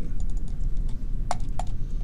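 Two sharp computer mouse clicks about a third of a second apart, opening the selected scene file, over a steady low hum.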